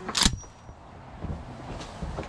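A single sharp metallic clack about a quarter second in, from the jammed shotgun's action being worked, with a brief ring after it, then faint handling noise.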